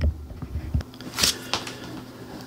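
Handling noise from a metal tripod fluid head held in the hand: a soft low knock at the start, then a few light clicks and a brief rustle a little over a second in.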